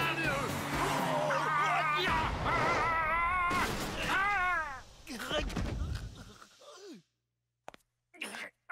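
A cartoon character's wavering, warbling yell over music and sound effects, fading away about five seconds in; then a second of silence before short groaning sounds near the end.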